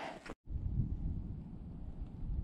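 Wind rumbling on the camera's microphone, a steady low noise that starts suddenly after a brief cut about half a second in.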